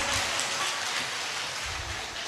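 Audience applauding, a steady patter of clapping that slowly dies down.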